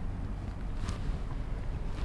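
A steady low background rumble, with one faint brief rustle about a second in.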